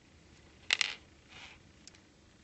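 Two quick, light clicks of a calligraphy pen being handled against the desk, followed by a faint brief scratch and a tiny tick.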